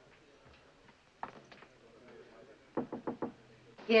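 Knocking on a wooden panelled door: one knock about a second in, then a quick run of raps near the end.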